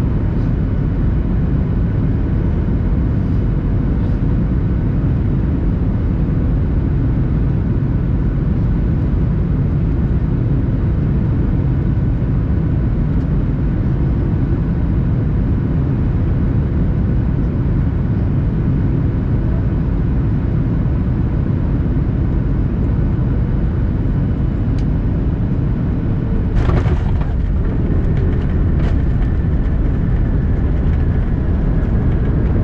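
Boeing 737-800 cabin on final approach: a steady low rumble of engines and airflow with faint steady whining tones. Near the end, a sudden thump and brief clatter as the main gear touches down on the runway.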